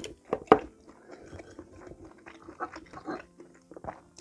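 A person chewing a mouthful of stew close to the microphone: irregular wet smacks and mouth clicks, with two sharper smacks about half a second in.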